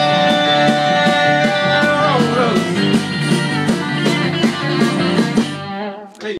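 A small band playing an uptempo country song live on acoustic and electric guitar, with a steady beat. A single note is held for about the first two seconds and then slides down, and the music falls away near the end.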